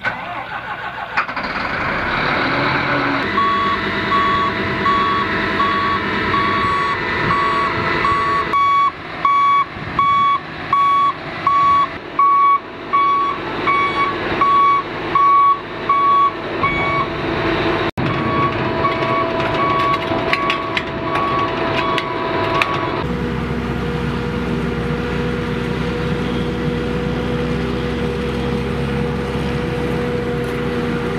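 A heavy harvesting machine's engine running while its reversing alarm beeps steadily, a little over once a second, for about fourteen seconds before it fades. About two-thirds of the way through the sound switches abruptly to the steady engine drone of a forage harvester at work.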